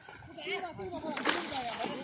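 Fish splashing at the surface inside a seine net as it is dragged through a shallow pond, with a sharp splash a little past halfway and another near the end. Men's voices call faintly in the distance.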